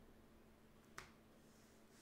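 Near silence with a single short, sharp click about a second in, from a trading card being handled on a playmat.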